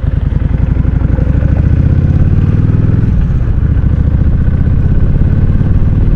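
Kawasaki Vulcan cruiser motorcycle engine running under way, a steady, pulsing low engine note heard from a handlebar-mounted camera.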